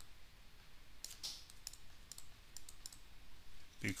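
Faint scattered clicks and taps of a stylus writing on a pen tablet.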